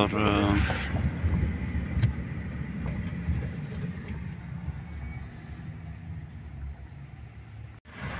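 Inside a moving car, a steady low rumble of engine and tyre noise that slowly gets quieter.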